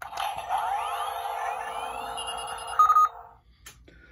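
Built-in electronic sound effect from Spin Master's The Batman Batmobile toy, set off by a press on the car: a whirring hum with several rising sweeps and a short bright beep near the end. It cuts off after about three and a half seconds.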